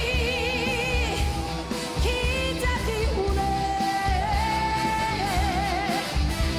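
A woman sings a Korean pop song with a live band, holding long notes with wide vibrato near the start and again in the second half.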